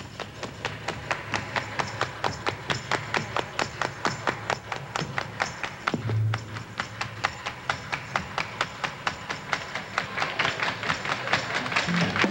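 A stripped-down break in a live soul-rock band's song: sharp percussive clicks keep time at about four a second, with an occasional low bass note, and the sound thickens again toward the full band near the end.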